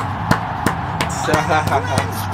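Hand clapping: four sharp claps about three a second in the first second, over the crowd and commentary of a football broadcast.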